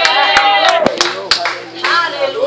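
Five sharp, irregular hand claps in the first second and a half, over a drawn-out raised voice.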